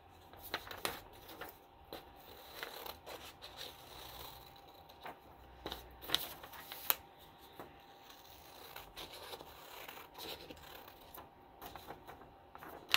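Scissors cutting a sheet of paper: quiet, irregular snips with rustling of the paper as it is turned.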